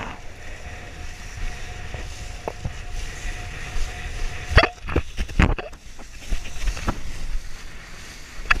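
Wind buffeting the microphone of an action camera on a kitesurfing ride, over water rushing under the board. A faint steady whistle runs through the first half, and a few sharp knocks come around the middle, as the board hits chop.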